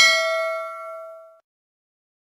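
A notification-bell 'ding' sound effect: one bright bell chime with several ringing overtones, fading out within about a second and a half.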